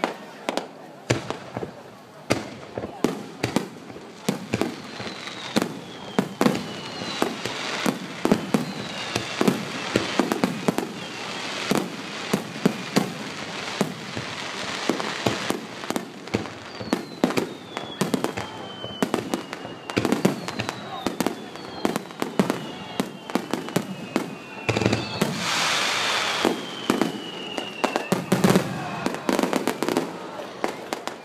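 Fireworks display: aerial shells bursting in a rapid string of sharp bangs, with whistles that fall in pitch and a denser stretch of continuous noise about twenty-five seconds in.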